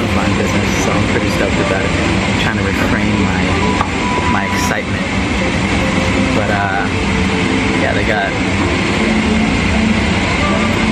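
Airliner cabin noise: a steady hum and hiss with scattered murmur of voices.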